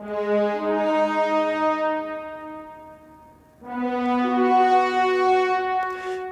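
Sampled orchestral French horns doubled by tenor trombones in unison, playing a slow melody of long held notes in two phrases: the first fades out about three seconds in, and the second enters about half a second later.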